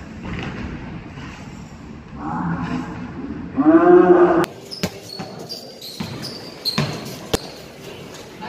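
A basketball bouncing on an indoor court floor during a pickup game in a large echoing hall. A player gives a loud, drawn-out shout about four seconds in. A few sharp bounces follow near the end.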